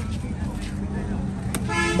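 A short vehicle horn toot near the end, one steady tone about half a second long, over a continuous low rumble of traffic.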